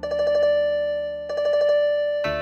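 Background music: two held keyboard notes with a fast wavering, the second entering just past a second in.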